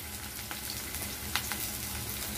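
Chopped green capsicum sizzling in hot oil in a metal kadai, a steady hiss with three small pops of spitting oil.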